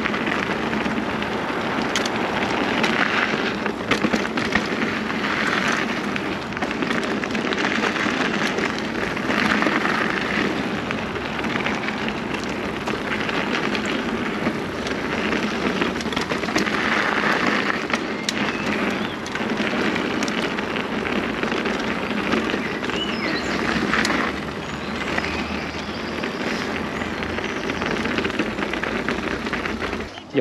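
Mountain bike tyres rolling fast over a loose gravel trail: a continuous crunching crackle, with frequent clicks, knocks and rattles from the bike over stones and bumps.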